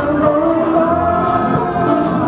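Live band music with a singer holding one long note over the band's accompaniment.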